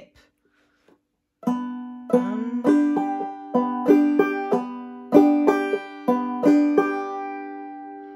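Five-string banjo played clawhammer style, slowly, in a syncopated drop-thumb strumming pattern: a string of single plucked notes and brushed chords beginning about a second and a half in, the last chord left ringing and fading near the end.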